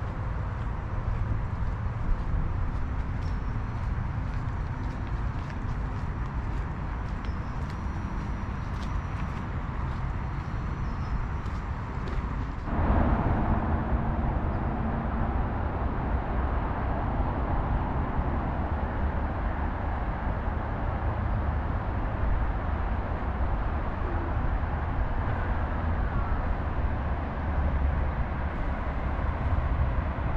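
Steady outdoor background noise, mostly a low rumble, that becomes louder about 13 seconds in.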